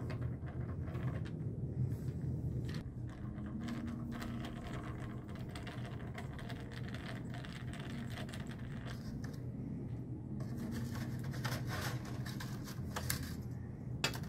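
Screwdriver backing corroded screws out of an autoharp's wooden body: scattered small clicks and scrapes over a steady low hum.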